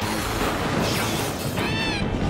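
Theme music cuts in suddenly, and near the end a cat meows once, a single rising-then-falling call.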